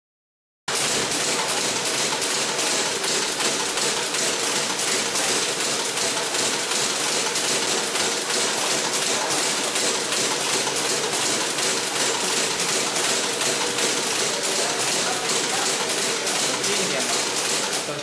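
Three-axis toilet brush tufting machine running, its tufting head punching tufts of bristle into the brush head in a fast, even clatter that starts abruptly just under a second in.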